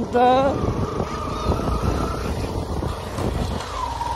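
Motorcycle running while riding along a rough dirt road, with wind on the microphone and a steady low rumble; a brief voice at the very start.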